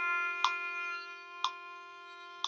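Violin sustaining a bowed whole note, low-second-finger F natural in a C major scale, over a steady sustained G drone tone. A metronome clicks once a second, twice here.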